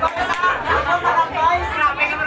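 Several people talking at once in lively, overlapping chatter.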